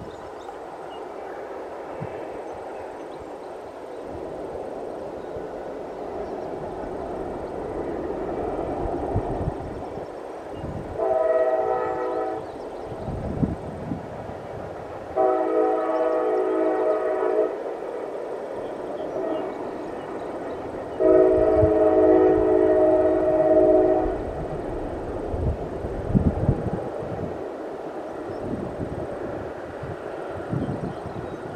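Freight train's locomotive horn sounding three blasts, a short one about eleven seconds in and then two longer ones, the last the loudest. Under them the steady rumble of freight cars rolling past.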